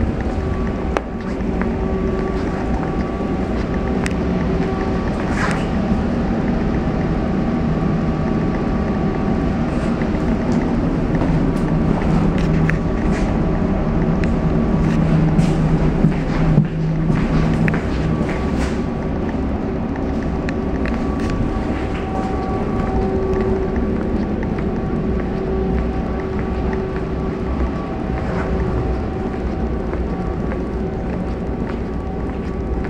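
Inside a GVB Amsterdam metro car: a steady hum with several constant tones from the train's onboard equipment, with a few scattered clicks and knocks.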